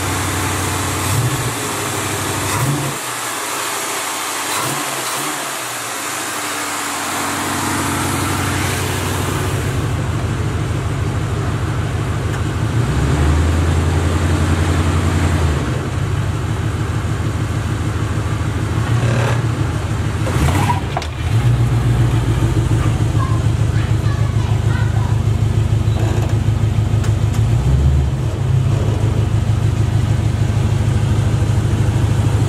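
Box Chevy Caprice's 312 small-block V8 revving hard in a burnout, the rear tires spinning on concrete. The engine climbs to a high, steady rpm about ten seconds in, dips briefly about two-thirds of the way through, then holds again.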